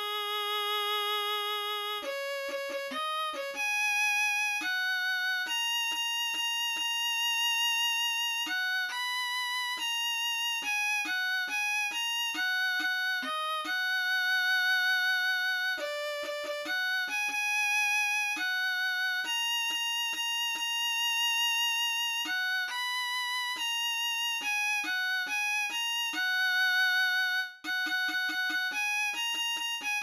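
A solo violin melody played one note at a time by notation-software playback, with even vibrato on the held notes. It runs through the score's six-sharp gospel tune with no accompaniment.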